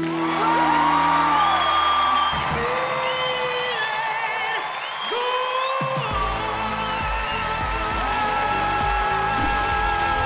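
Studio audience cheering, whooping and applauding over music, with a deep bass coming in about six seconds in.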